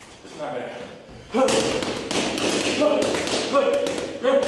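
Boxing gloves striking focus mitts in rapid combinations, sharp smacks in quick succession starting suddenly about a second and a half in, with a man's voice over them.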